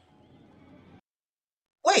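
Near silence with faint background sound for about a second, then a woman's voice starts right at the end, saying "wait".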